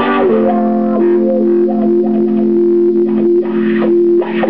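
Electric guitar played through effects pedals: a chord is struck at the start and its low notes ring on steadily while higher notes change above them.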